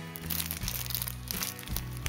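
Clear plastic packaging crinkling in short crackles as it is handled, over background music with sustained low notes.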